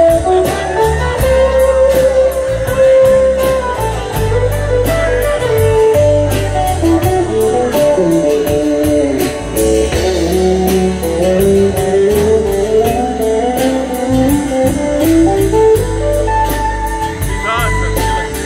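Live band playing an instrumental break in a blues-rock song: a guitar lead line with bent, sliding notes over strummed acoustic guitar, a walking bass and drums with steady cymbal beats.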